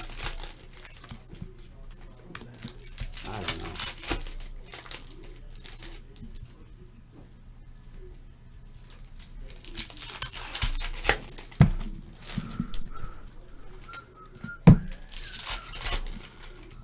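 Football trading cards being handled and flicked through by hand, in bursts of papery rustling and sliding, with a sharp tap near the end as a stack is set down on the table.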